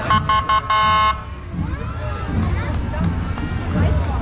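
A vehicle horn honks three quick toots and then a longer one, all within about the first second, the loudest sound here; spectators' voices follow.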